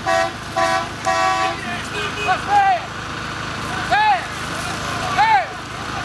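A vehicle horn toots three short blasts, the last one longest, then people shout several loud rising-and-falling calls over the low rumble of passing trucks.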